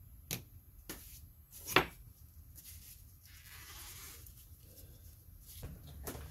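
Small hand-tool work on a motorcycle brake master cylinder: a few sharp clicks and taps of metal parts, the loudest a little under two seconds in. In the middle comes a soft scrubbing as a toothbrush cleans the master cylinder body.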